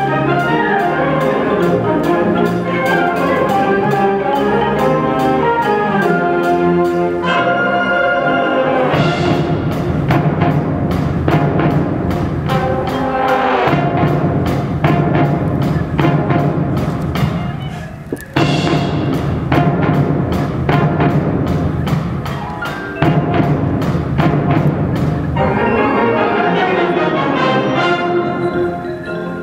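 Concert band playing a fast piece: flutes and other woodwinds over a driving percussion beat. The full band grows heavier about nine seconds in and dips briefly a little past the middle before coming back in.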